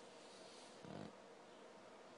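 Near silence: room tone, with one brief faint low sound about a second in.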